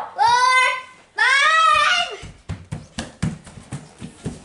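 Two high-pitched wordless calls from a young child in the first two seconds, then a quick patter of bare feet running across a hardwood floor.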